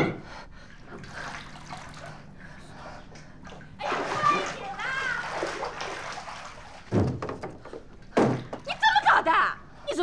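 Water splashing and sloshing as someone wades barefoot through a flooded floor, with a couple of low thuds about seven and eight seconds in. A woman's voice breaks in with short wordless exclamations.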